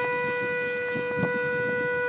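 A vehicle horn sounding continuously on one steady note, with faint voices beneath it.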